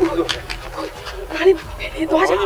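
A woman's raised, distressed voice in short shouts, the loudest about three-quarters of the way in.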